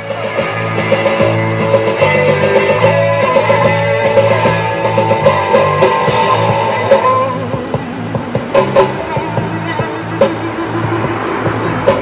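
Loud rock music with electric guitar and drums, fading up over the first couple of seconds.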